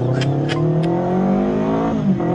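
Yamaha YZF-R3's parallel-twin engine pulling under throttle, its pitch rising steadily as the bike accelerates out of a corner.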